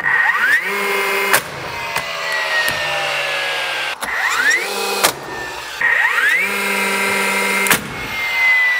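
DeWalt cordless flywheel framing nailer spinning up with a rising whine and firing nails into a wooden sill plate, four sharp shots in all, its motor winding down with a falling tone between them.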